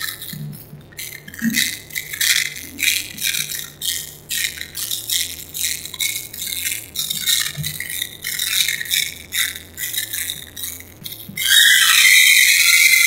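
Music led by high-pitched rattling percussion in a steady rhythm, with little bass. Near the end it cuts abruptly to a louder, steady high-pitched ringing sound.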